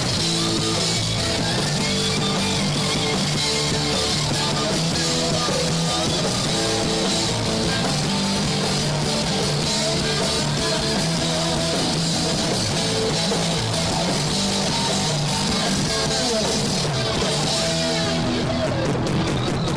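Live rock band playing through a PA, recorded from the crowd: electric guitar and bass guitar over a steady drum kit beat.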